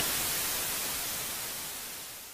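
Analogue TV static hiss, fading steadily.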